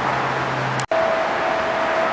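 Steady hiss of background noise with a low hum, broken off sharply just under a second in by an edit cut, after which the hiss carries on with a steady higher-pitched hum.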